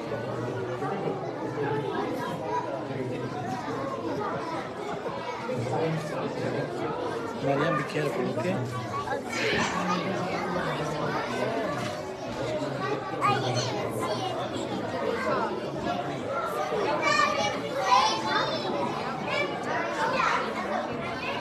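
Many children and adults chattering at once in a large hall, no single voice clear, with a few higher children's calls near the end.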